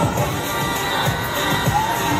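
Street audience cheering, with high-pitched shouts, over a K-pop dance track playing on the sound system.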